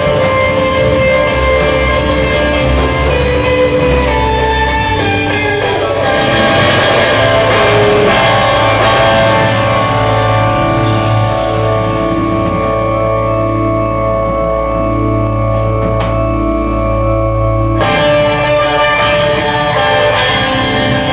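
A live rock band playing, led by electric guitar over bass and drums. About halfway through the band settles into long held notes, which change about two seconds before the end.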